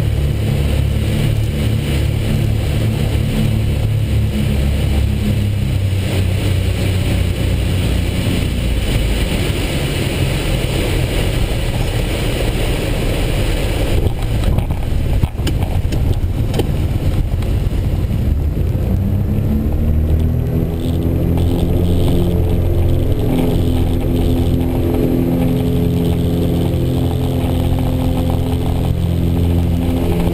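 Twin engines of a Piper Seneca II heard inside the cockpit during a touch-and-go: the engine note drops as power comes back for landing, a few knocks about halfway through as the wheels touch down, then the engines rise in pitch and get louder as power goes up for the takeoff roll.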